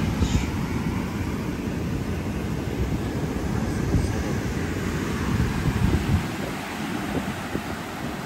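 Wind buffeting a phone's microphone on a beach: a gusty low rumble that eases after about six seconds.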